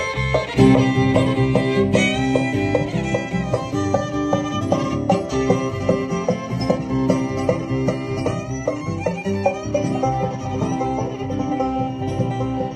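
Bluegrass band playing an instrumental intro over a steady plucked rhythm: five-string banjo, acoustic guitar and electric bass, amplified through a PA.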